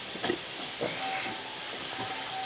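Steady hiss, with a couple of soft short gulps as a drink is swallowed from a glass mug in the first second.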